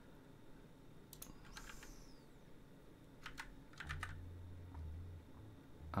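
Faint computer keyboard typing: a few scattered keystrokes in short clusters. A brief falling squeak comes under two seconds in, and a low hum joins in the last two seconds.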